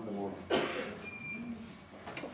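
Pull-up bar on wooden wall bars creaking and squeaking under a man's weight as he pulls himself up, with a short thin squeak about a second in.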